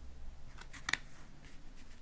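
Oracle cards being handled: one card laid down and the next one drawn, with a few light card clicks and snaps about a second in.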